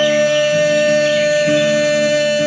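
A singer holds one long, high, steady note of a Bengali devotional song (kirtan), over instrumental accompaniment that keeps a regular pulse.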